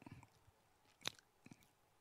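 Near silence with a few faint, short clicks, the sharpest about a second in.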